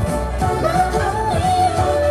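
K-pop dance song with female vocals singing a melody over a steady drum beat, heard live through the concert sound system.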